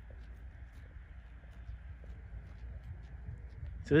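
Sheep and lambs grazing close by: soft, irregular tearing and cropping of grass, over a low steady rumble.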